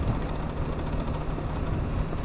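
BMW G 310 GS motorcycle's single-cylinder engine running steadily at a cruise, with wind and tyre noise from the gravel road.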